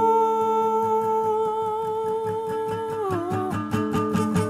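A wordless sung note held long and steady over a softly pulsing accompaniment. About three seconds in, the note slides down, wavers and breaks off, and evenly repeated chords take over. This is the closing cadence of the song.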